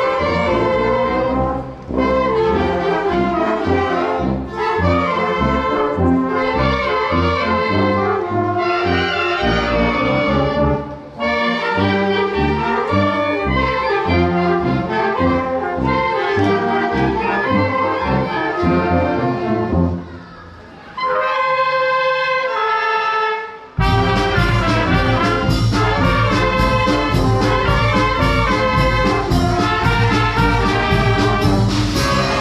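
Youth wind band of brass and woodwinds (sousaphones, trumpets, clarinets) playing a piece. About 20 seconds in the music thins to a quiet, lighter passage for a few seconds. Then the full band comes back in loudly with heavy bass.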